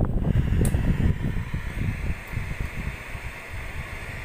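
LG 21-inch CRT television being switched on: a sudden low buzz at power-on, typical of the picture tube's degaussing coil, fading away over about two seconds, with a steady hiss from the set behind it.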